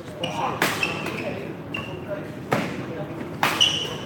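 Badminton rackets striking the shuttlecock during a rally: three sharp hits, with short high squeaks from shoes on the court floor between them.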